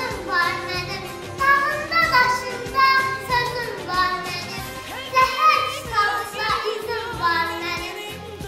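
A song with instrumental accompaniment, sung by a high voice whose melody rises and falls with vibrato.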